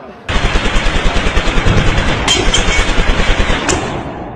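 A rapid burst of automatic gunfire that starts suddenly and runs on at about ten shots a second, with a few sharper cracks standing out.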